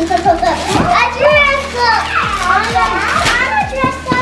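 Young children's high-pitched, excited voices, talking and exclaiming over one another, with unclear words.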